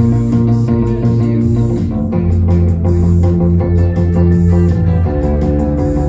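Electric bass guitar playing a rock bass line of sustained low notes along with a recorded full-band track of drums and guitars.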